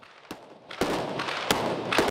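SAR 21 assault rifles firing on an indoor range. A faint click comes first. From about a second in there is a continuous echoing crackle of fire, with sharp shots standing out twice, the last one loudest.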